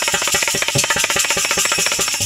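Instrumental passage of a folk bhajan ensemble: harmonium notes over a fast, dense rattle of jingling wooden kartal clappers, small hand cymbals and dholak strokes.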